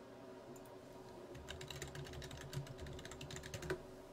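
Computer keyboard typing: a quick run of keystrokes lasting about two seconds, starting a little after a second in and ending with one sharper key press.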